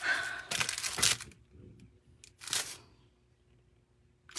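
Paper and plastic card pieces being handled and shuffled, rustling: one longer rustle in the first second and a short one about halfway through.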